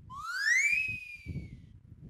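A single whistle that rises in pitch for about half a second, then holds and slowly sinks before fading out, over a low background rumble.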